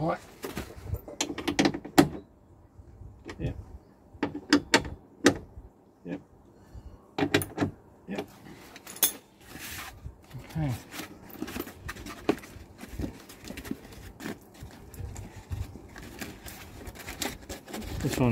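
Irregular clicks, taps and rubbing from hands handling the foam sound-deadening skin and wiring against the inner steel panel of a BMW E90 rear door, with a few brief vocal sounds here and there.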